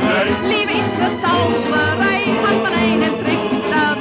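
Music from an original 1940s German film Schlager recording, with a melody line carrying strong vibrato over a full accompaniment.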